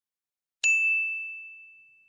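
A single bright chime sound effect struck about half a second in, ringing on one high tone that fades away slowly: the sting of an end-of-video logo animation.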